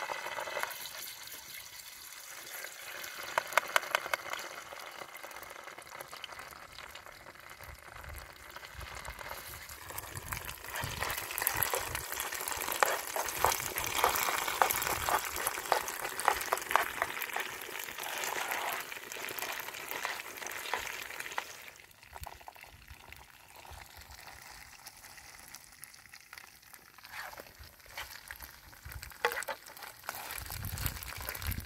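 Tomato paste frying in hot oil in a steel pan, sizzling and crackling while a spoon stirs it. There are a few sharp clicks a few seconds in. The sizzle is loudest in the middle and dies down after about two thirds of the way through.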